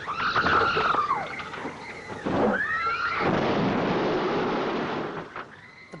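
Children screaming inside a school bus as it swerves and rolls onto its side, with high wavering screams at the start and again about halfway, then a long noisy rumble of the crash that fades near the end.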